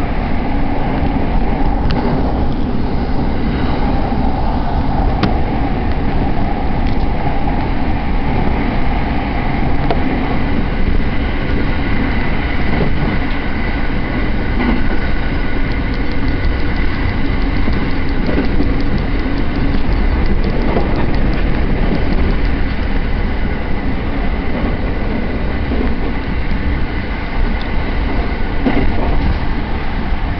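A passenger train running at speed, heard from inside the carriage: a steady loud rumble of wheels on rail, with a few faint rail-joint ticks midway.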